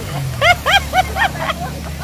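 Laughter in a run of about five short bursts, roughly four a second, over the low rumble of a vehicle passing on the road.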